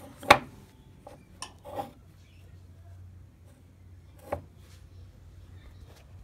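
Brittle pieces of clear polystyrene CD case clacking as they are dropped into a metal springform tin of half-melted plastic: one sharp clack just after the start, a few lighter clicks over the next second and a half, and one more about four seconds in. A faint low hum runs underneath.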